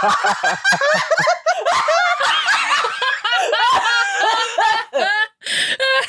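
Several people laughing together, their laughs overlapping, with a short break about five seconds in.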